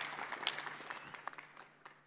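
Audience applauding, the clapping thinning out and fading away.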